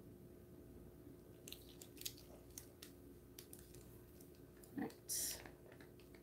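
Faint scattered clicks and small handling noises as gloved hands work a small cup and wooden stir stick while pouring resin, with a short thump and a brief hiss about five seconds in.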